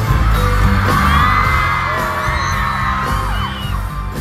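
Live band music through an arena sound system with a heavy bass beat, and a crowd of fans screaming over it from about a second in until near the end.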